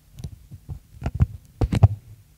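Soft, low knocks and taps of marker pens being handled at a flipchart's tray, coming more often and louder in the second half, over a faint steady electrical hum.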